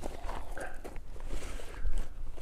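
Backpack being rummaged through on gravel: irregular rustles, soft clicks and scuffs from the pack and its contents, with a louder scuff near the end.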